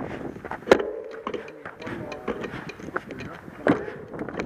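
People talking indistinctly, with sharp knocks scattered through it; the two loudest knocks come just under a second in and near the end.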